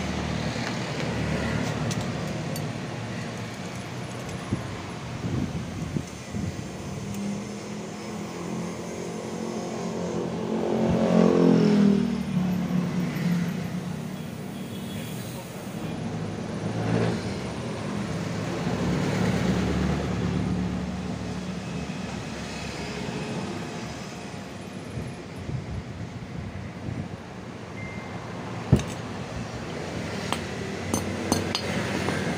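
A motor vehicle's engine is heard running: it grows louder and falls in pitch as it passes about a third of the way in, then a smaller swell follows later. Near the end there is a single sharp tap.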